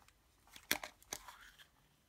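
Yellow plastic Kinder Surprise toy capsule being pried open by hand: one sharp plastic click as the halves snap apart, followed by a couple of fainter clicks.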